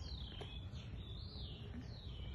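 A bird calling with three clear, high whistled notes in quick succession. The first and last slide down in pitch, and the middle one wavers up and down. A faint low rumble runs underneath.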